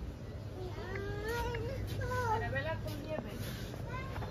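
A high-pitched voice-like sound, wavering up and down in pitch for about two seconds, over a steady low hum.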